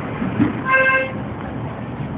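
A single short horn toot, one steady note lasting about a third of a second just under a second in, over continuous street noise.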